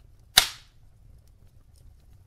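Wood fire burning in a fireplace, with one loud, sharp pop from the logs about half a second in that fades quickly. Faint crackles and a low rumble sit under it.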